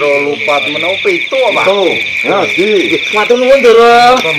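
A steady, high-pitched, finely pulsing night chorus of calling animals runs throughout. Over it are loud voices with sharply rising-and-falling pitch, loudest near the end.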